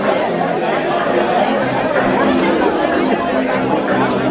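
Crowd chatter: many voices talking over one another in a steady babble.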